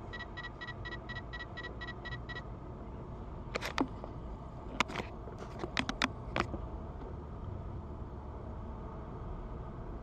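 Steady road and engine noise inside a moving vehicle. Rapid electronic beeping, about five beeps a second, stops about two seconds in, and a series of sharp clicks and knocks follows in the middle.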